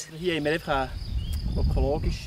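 Field insects chirring steadily in a high band, with short snatches of people's voices and a low rumble.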